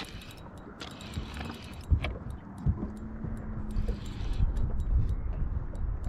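Spinning reel being cranked to bring in a hooked fish, with scattered light clicks, over low wind rumble on the microphone. A faint steady hum comes in for a couple of seconds around the middle.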